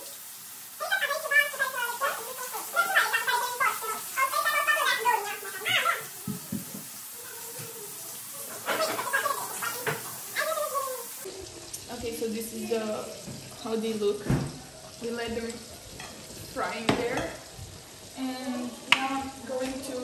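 People talking over shrimp sizzling in oil in a wok, with a few knocks of utensils against pans.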